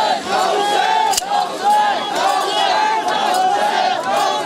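A crowd of mourners shouting together in rhythmic, repeated cries during zanjeer matam, many men's voices overlapping. A single sharp click stands out about a second in.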